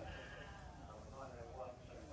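Sheep bleating faintly.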